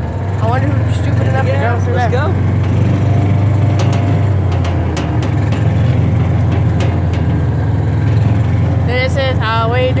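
A battery-powered John Deere Gator kids' ride-on toy being driven over a dirt path: a steady low drone from its electric drive, with scattered clicks and knocks as the plastic body and wheels jolt over the ground. A voice is heard briefly in the first couple of seconds, and speech starts near the end.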